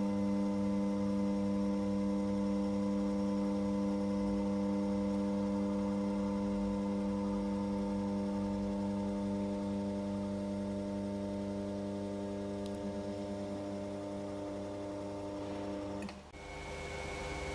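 Electric drive of a UWM WP 500 T welding positioner running as its table tilts: a steady electric hum made of several evenly spaced tones. It stops right at the end.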